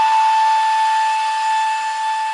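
A single synth lead note held steadily, with no beat or bass under it, at the end of a descending melody in a Brazilian funk track.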